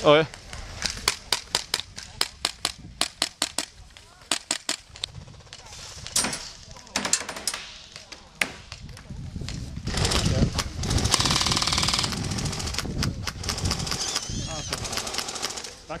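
Airsoft rifles firing: several quick bursts of sharp snapping shots over the first eight seconds or so, then a louder, denser stretch of rapid fire mixed with distant voices.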